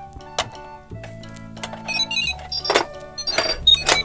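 Light background music with steady low notes and a tinkling melody, with a few sharp plastic clicks and knocks as toy figures are set into a plastic toy truck.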